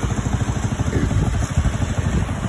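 Single-cylinder air-cooled motorcycle engine idling with a steady, fast, even pulse.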